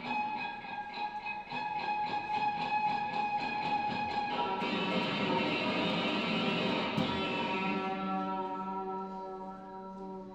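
Amplified Disarm violin, built from decommissioned firearm parts, played through effects pedals: sustained ringing notes with a rapid pulsing through the first half, dying away near the end.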